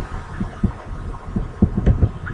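Typing on a computer keyboard: a run of irregular dull keystroke thuds, several a second.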